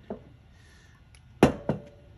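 Metal Keihin CV carburetor rack set down on a wooden workbench: one sharp knock about one and a half seconds in, with a lighter knock just after.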